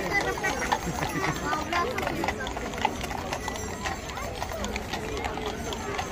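Horses' hooves clip-clopping irregularly on an asphalt street as ridden horses and a horse-drawn carriage pass, with the chatter of a crowd of onlookers underneath.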